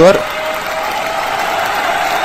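Steady applause with a faint held tone underneath. The last syllable of a man's voice ends right at the start.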